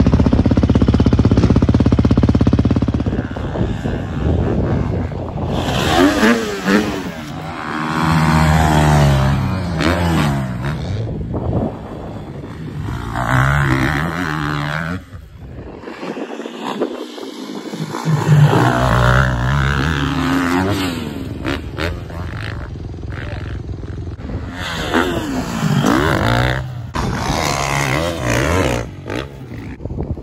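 Motocross dirt bike engine running hard, its pitch repeatedly climbing and dropping with throttle and gear changes, with a brief dip near the middle.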